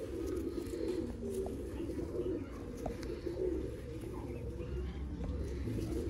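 Domestic pigeons cooing in a loft, a continuous low murmur of overlapping coos, with a few faint clicks.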